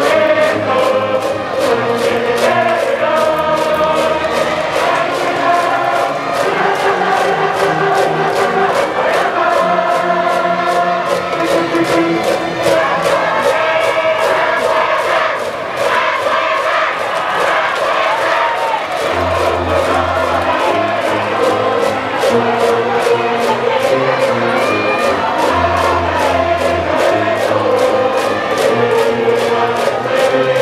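High-school baseball cheering section: a brass band playing a cheer tune over a steady drum beat, with the massed students singing and chanting along.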